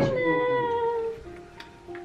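Background music: a single note struck at the start that sinks slightly in pitch and fades over about a second, followed by a fainter held note.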